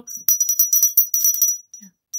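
Green satin Westmoreland glass hand bell being rung, its clapper striking the glass rapidly for about a second and a half with a high, bright ringing tone.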